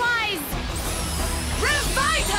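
Cartoon battle soundtrack: dramatic music with a thin, high shimmering effect that glides slowly downward. Near the end, a winged horse creature's whinnying cry begins, rising in pitch.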